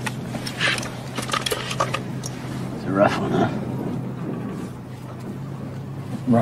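A steady low hum, with a man's voice calling out wordlessly once, briefly, about three seconds in.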